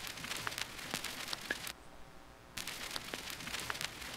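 Wide stereo vinyl crackle sample playing back: a steady hiss with scattered small pops and clicks, dropping out for a moment near the middle before starting again.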